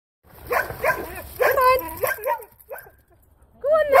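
Dog barking: a quick run of short, high barks for about two seconds, then a brief pause, with more barking near the end.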